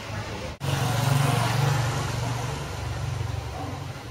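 Street sound with a motor vehicle engine running close by. It cuts out sharply for a moment about half a second in, then comes back louder and gradually eases off.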